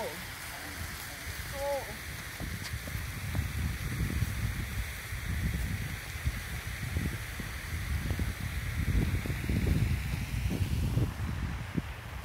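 Steady hiss of a fountain's falling water, under irregular low buffeting on the microphone that grows stronger through the middle. A short voice call comes near the start.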